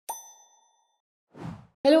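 An intro sound effect: a single bright pop with a bell-like ring that dies away within about half a second. About a second later comes a short soft whoosh, then the start of a woman's voice at the very end.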